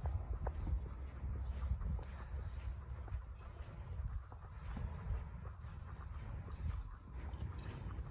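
Wind rumbling on a phone microphone outdoors, with faint, irregular footsteps on pavement as the person holding it walks.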